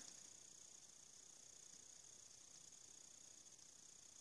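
Near silence: faint steady room tone with a light hiss.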